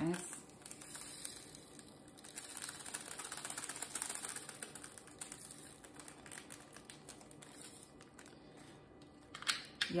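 Small plastic bag of diamond-painting drills being handled: crinkling plastic with a fine, quick clicking as the tiny resin drills shift inside, fullest in the middle and fading out near the end.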